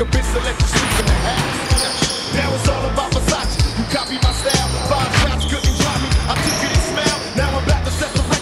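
A basketball bouncing and players moving on a wooden gym floor, with hip hop music and a steady bass beat playing over it.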